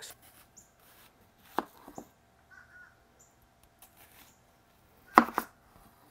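Chef's knife cutting through a white onion and knocking down onto a plastic cutting board: a few sharp, separate knocks, the loudest a quick pair near the end.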